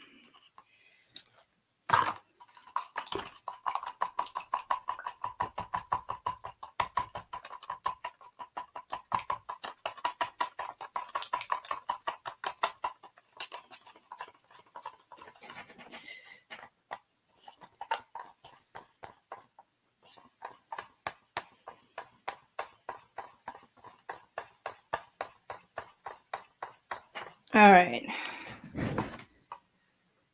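Acrylic paint being stirred in a plastic cup with a wooden craft stick: a steady rhythm of scraping strokes, about three or four a second, pausing briefly midway. A short burst of voice comes near the end.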